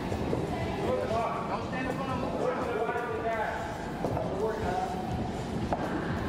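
Indistinct voices with background music and scattered light knocks, as of gloves and feet during boxing sparring.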